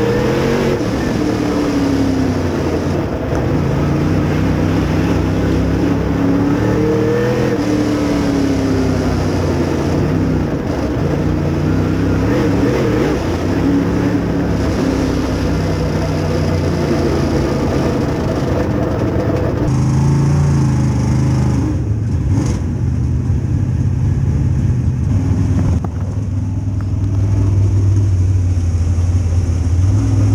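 Dirt Super Late Model race car's V8 engine heard from inside the cockpit, its pitch rising and falling as the car goes around the track. A little under two-thirds of the way in, the sound changes to a lower, steadier engine note.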